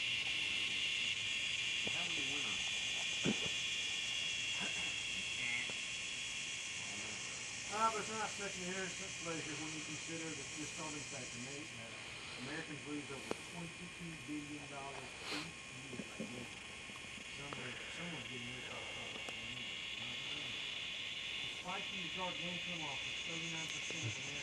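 Steady, high-pitched chorus of insects buzzing without a break. Its upper part drops out about halfway through. Faint voices come in briefly about a third of the way in and again near the end.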